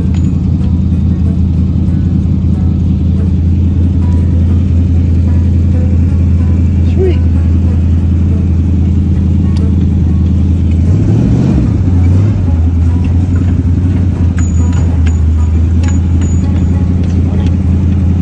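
Rat rod's engine running steadily as the car is driven, with a brief rise and fall in revs about eleven seconds in.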